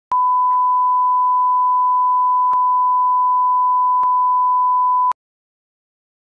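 Steady 1 kHz line-up test tone of the kind played with television colour bars, one unbroken pure tone that cuts off suddenly about five seconds in.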